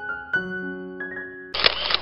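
Soft piano music plays. About one and a half seconds in, a camera shutter sound effect comes in as a short burst of noise lasting about half a second, louder than the music.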